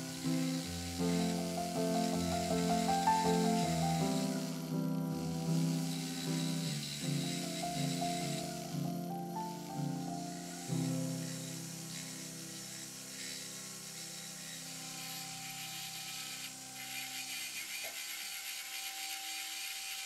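Background music plays throughout over the high grinding hiss of a flexible-shaft rotary handpiece's small bur cutting into mother-of-pearl. The grinding pauses briefly a couple of times.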